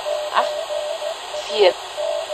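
Spoof shortwave numbers-station broadcast: a voice reads single digits, the loudest about a second and a half in, over steady radio hiss and a continuous tone broken by short regular gaps.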